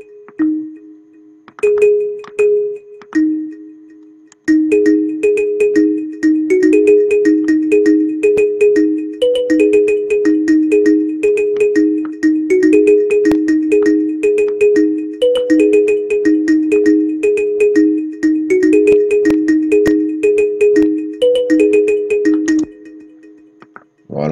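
Afro trap beat playing back from FL Studio at 160 BPM. A short plucked kalimba melody from the Purity synth plugin plays almost alone at first. About four and a half seconds in, the drums and percussion come in louder, and everything stops shortly before the end.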